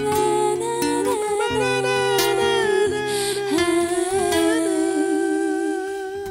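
Wordless humming by singers, long held notes with vibrato, over a fingerpicked nylon-string classical guitar. It ends on one long held note.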